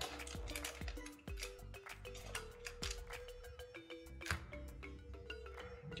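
Quiet background music of held notes that change pitch in steps. Under it come scattered light clicks and rustles from cello-wrapped card packs being handled in their cardboard box.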